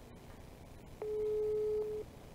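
Telephone ringback tone from a mobile phone on speaker: one steady single-pitch tone about a second long, starting halfway through, as the outgoing call rings at the other end.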